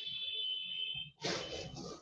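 A steady high-pitched alarm-like tone held for about a second, then a short burst of hiss.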